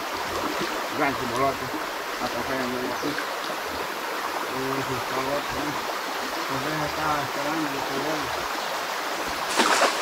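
River water running steadily, a continuous rushing wash, with faint voices talking in the background partway through.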